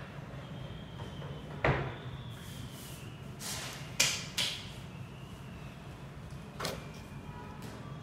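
A wooden fold-down wall table being pushed shut into its wall frame, with a sharp wooden knock about one and a half seconds in. A few more sharp knocks follow, the loudest at about four seconds.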